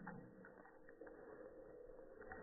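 Near silence: faint outdoor background with a low steady hum and a few soft clicks in the first second.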